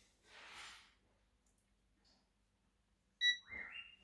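A handheld stud and live-cable finder gives a short electronic beep near the end as it finishes calibrating against the wall, followed by a brief tone that steps upward in pitch. Before that there is only a faint soft rustle, then near silence.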